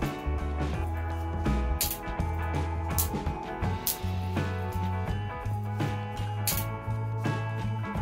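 Background music with guitar and a steady bass line. A few sharp cracks come through it at irregular moments: twigs being snapped by hand off a branch.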